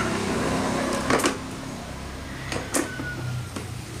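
Hard plastic parts of a chicken feeder knocking and clicking as the tube is handled and fitted into its feeding tray: a few sharp knocks, the loudest about a second in.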